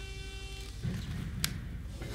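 Cartoon soundtrack: a held tone that fades out within the first second, then a low sound and a single sharp click about one and a half seconds in.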